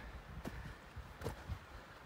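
Faint footsteps on a rocky forest trail: a few soft, irregular steps, over a low rumble of microphone handling as the camera is carried.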